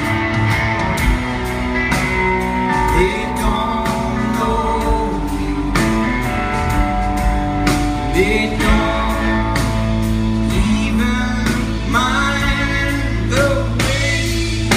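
Live rock band playing an instrumental passage: electric guitars over bass and drums, with bending, sliding lead-guitar lines about midway and again near the end.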